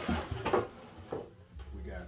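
A cardboard shoebox is pulled out of a larger cardboard box and lifted, with cardboard scraping and knocking in two or three quick bursts, the loudest about half a second in.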